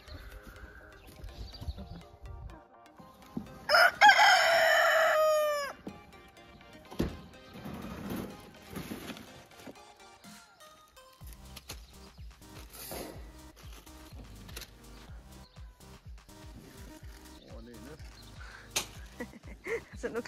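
A rooster crows once, loud, about four seconds in, the call's last note falling away at the end. Scattered faint knocks and clicks follow.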